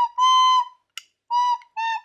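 Recorder playing a tune of short, separated notes at much the same high pitch, about four notes in two seconds, one dipping slightly in pitch.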